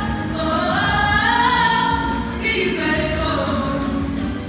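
Female voices singing a gospel song, a lead singer with two background vocalists, in long held notes that slide in pitch.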